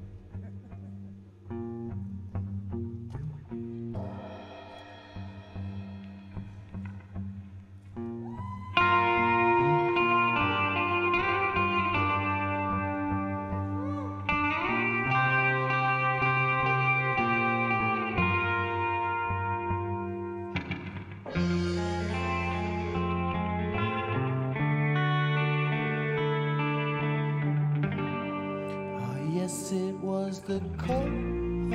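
Live band playing an instrumental song introduction led by electric guitar and bass guitar. It is sparse and quieter at first, then the full band comes in louder about nine seconds in.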